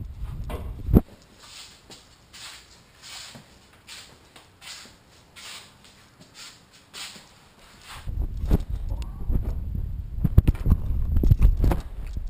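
Slow shuffling footsteps on a concrete garage floor, soft and evenly spaced about twice a second, after a sharp knock about a second in. From about two-thirds of the way through, heavy rumbling and knocks of handling noise on the microphone cover them.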